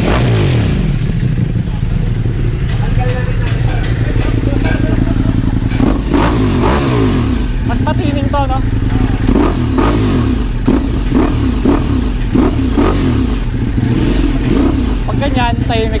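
Ducati Multistrada V4's V4 engine running through a cat-delete exhaust: it idles, with throttle blips that rise and fall, the strongest about six seconds in.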